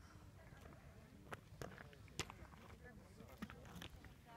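Faint, indistinct voices of people talking, with a few sharp clicks and knocks scattered through, the loudest a little past halfway, over a steady low rumble.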